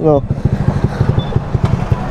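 Motor scooter engine idling, with a low, rapid pulsing.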